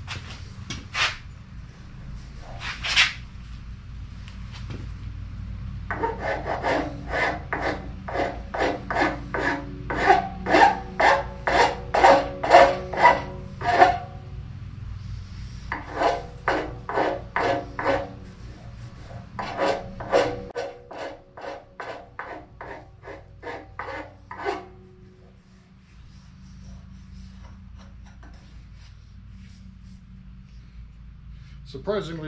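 Hand tool scraping along a wooden axe handle clamped in a jaw horse, stripping its factory lacquer. A few single scrapes come first, then runs of quick strokes, about three a second, with short pauses between runs. It goes quiet a few seconds before the end.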